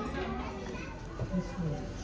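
Indistinct voices of people talking nearby, with children's voices among them.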